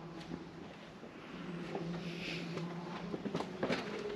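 Faint steady low hum, with a few light footsteps on a paved path in the last second or so.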